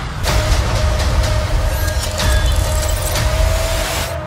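Trailer sound design: a loud, dense rumbling noise sets in a moment after the start, with a single sustained tone that creeps slightly upward, then drops away at the end.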